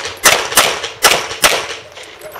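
Four handgun shots in two quick pairs, each cracking sharply and trailing off in a short echo.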